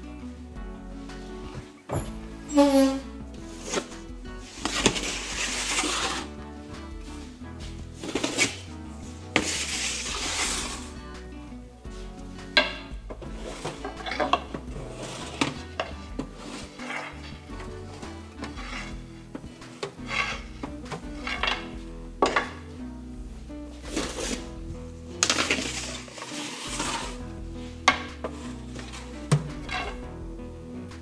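Metal baking trays scraping and clanking as they are slid into a deck oven with a peel: several long scraping slides and sharp knocks, over background music.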